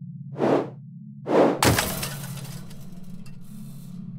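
Animated fight sound effects: two quick whooshes, then a loud crash with a shattering tail that fades over a couple of seconds, over a steady low hum.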